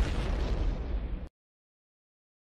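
A single booming impact sound effect, the reveal sting for a qualifier's name. It hits sharply, rumbles on for just over a second and cuts off suddenly.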